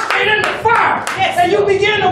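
Congregation clapping, with loud excited voices shouting in worship over the claps.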